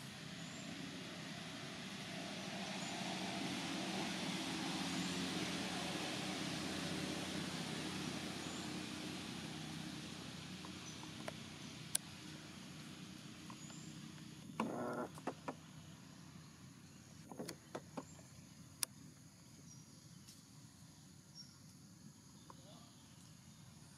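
A motor vehicle passing by, swelling over the first five seconds and then fading slowly away. A few short knocks and clicks follow in the second half.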